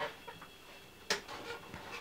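Quiet room tone broken by two brief knocks about a second apart.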